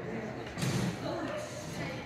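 Indistinct speech, with a short louder stretch of voice about half a second in.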